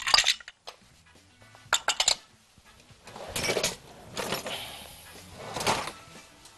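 Kitchen handling sounds at a glass mixing bowl: a knock at the start, a quick run of clinks about two seconds in, then several short scraping, rustling sounds.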